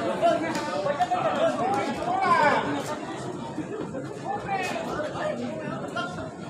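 Several people talking and calling out at once, a babble of voices in which no single speaker stands out, louder calls in the first half.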